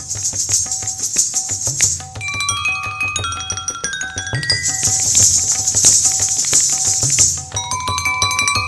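Jaltarang, a set of water-filled porcelain bowls struck with thin sticks, playing quick rising and falling runs of bell-like notes over a tabla pulse. Twice the ghungroo ankle bells of kathak footwork come in as a dense jingling: at the start, and again from about five seconds in.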